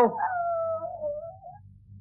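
A man imitating a dog's whine: one long, wavering tone that slides slowly down in pitch and fades out after about a second and a half.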